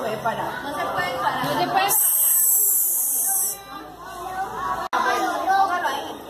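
Group of young children chattering and calling out. About two seconds in, a loud, high hiss lasts about a second and a half before the chatter comes back.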